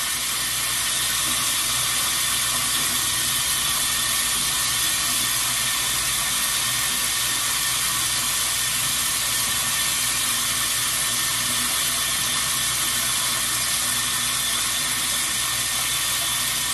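Water running steadily from a bathroom tap, an even rushing hiss with no change in level.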